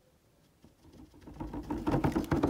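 A plastic water bottle handled and jostled: a rapid crackling rattle that starts about halfway in and builds to its loudest at the end.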